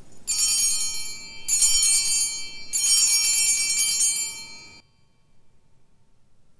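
Altar bells ringing three times at the elevation of the consecrated host, in bright jingling peals of several tones, the third ring the longest. The ringing stops short just under five seconds in.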